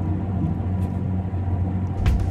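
A steady low rumble with a constant hum, with no clear events in it.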